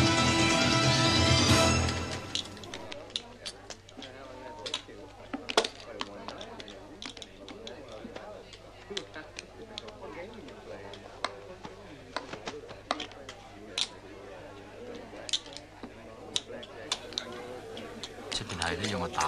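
Soundtrack music drops away about two seconds in, giving way to casino hall ambience: a low murmur of voices with many scattered sharp clicks from the gaming tables.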